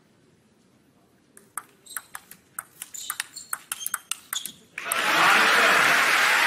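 A table tennis rally: the plastic ball ticking quickly and irregularly off the bats and table for about three seconds. About five seconds in, loud crowd applause starts and is the loudest sound.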